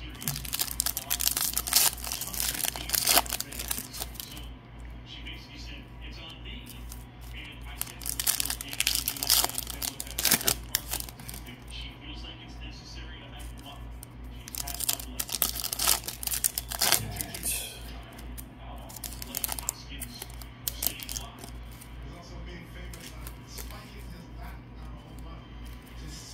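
Foil trading-card pack wrappers being torn open and crinkled by hand, in four separate bursts of crinkling, over a steady low hum.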